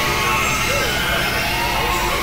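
Several music tracks layered and playing at once as one dense, noisy wall of sound. Wavering voice-like lines sit over steady held tones, a hiss and a low rumble, all at an even loudness.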